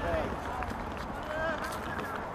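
Footballers' shouts on the pitch, faint and distant: one short call near the start and another about a second and a half in, over a steady low rumble.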